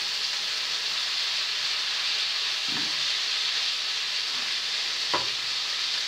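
Food frying in a pan: a steady, even sizzle, with a faint knock near the end.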